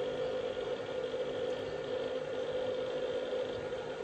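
A steady machine hum with a constant low tone, holding an even level throughout.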